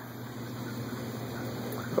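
Steady low hum with a faint, even hiss of background room noise.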